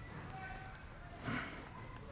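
Mostly quiet room tone with one soft, short thump a little over a second in, as palms press down on a person's back in shiatsu.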